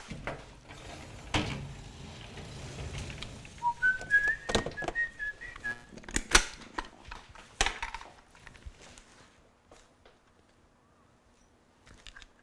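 A person whistling a short tune of a few notes for about two seconds, among knocks and clatter of kitchen containers being handled. It goes almost quiet near the end.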